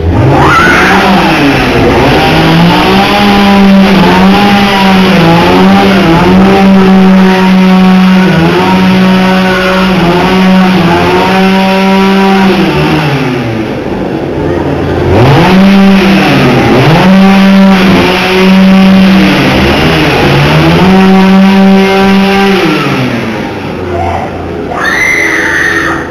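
A small engine revving hard and held at high speed, dropping back and revving up again a few times, loudest through the long held stretches.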